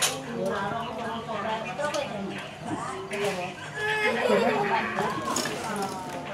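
Indistinct voices talking, with a few light clinks and knocks of enamel pots and bowls being handled.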